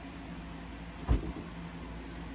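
A single short thump about a second in, over a faint steady hum of room noise.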